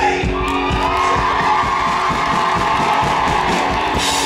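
Live rock band playing, electric guitar and drums, with an audience cheering and screaming loudly over it.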